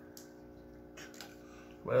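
A few faint clicks as a boiled crawfish shell is peeled apart by hand, over a faint steady hum; a man starts speaking near the end.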